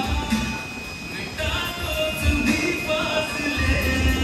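Music playing, with a held melody over a low recurring beat.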